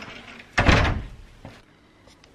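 A wooden door being shut: a light click right at the start, then one loud thud about half a second in that dies away quickly.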